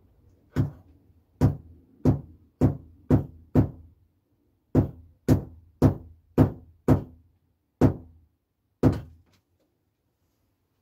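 A hammer tapping a nail into the wooden baseboard of a model railway layout: about a dozen sharp knocks, roughly two a second, with a short pause a little before halfway, each with a brief resonant tail from the board.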